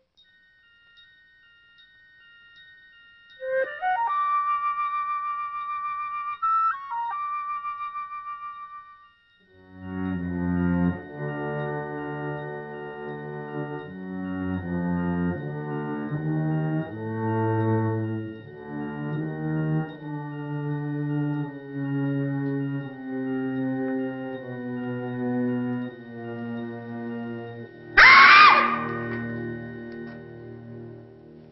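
Eerie orchestral film score with no dialogue. Faint steady high tones run throughout, a tone glides up and holds for a few seconds near the start, then slow low sustained chords move about once a second. A sudden loud high stab comes near the end.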